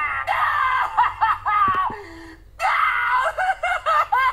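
Cartoon character's high-pitched voice screaming and squealing in short, wavering cries, with a brief break a little past two seconds in.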